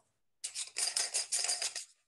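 Baader Hyperion zoom eyepiece's 2-inch barrel being unscrewed by hand: a rapid series of short scraping, rattling strokes from the threads, lasting about a second and a half.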